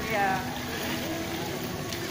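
A voice speaking one short word, then steady background noise with faint voices.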